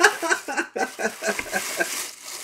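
A man laughing in a run of short, quick bursts, about five a second.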